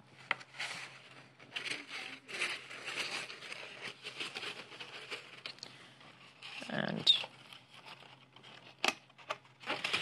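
Corrugated paper crinkling and rustling in the hands while paper fasteners are pushed through punched holes in the hat, in small irregular crackles. A short, louder low sound comes about seven seconds in, and a sharp click near the end.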